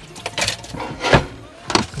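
Dishes and a wooden cutting board being handled and put away while drying up: three short knocks and clatters, the loudest about a second in.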